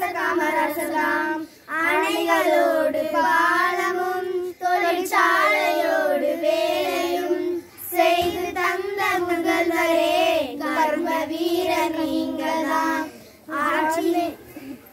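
A small group of schoolgirls singing a Tamil song together in unison, in phrases separated by short pauses for breath.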